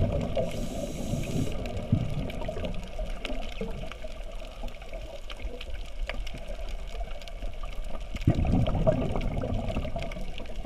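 Underwater ambience heard from a camera below the surface: a muffled, steady rush of water with many faint scattered crackling ticks. A louder low rush comes about eight seconds in.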